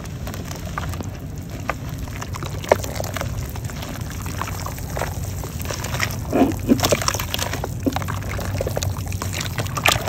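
Hands crumbling chunks of dry red mud into a basin of water and squeezing and kneading the wet mud, a run of crackles, splashes and squelches that is busiest and loudest about six to seven seconds in.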